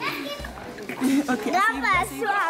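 A group of young schoolchildren chattering and calling out excitedly close to the microphone. Near the end, one child's high voice wavers up and down in a squeal.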